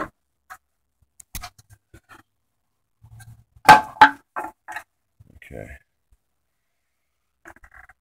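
Scattered clicks and knocks of the air cleaner housing and intake being pulled out of the engine bay, with two loud knocks close together about four seconds in.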